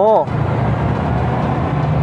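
Yamaha R15 v3 motorcycle's 155 cc single-cylinder engine running steadily at low speed, picked up by a helmet chin-mounted camera, after a voice that ends a moment in.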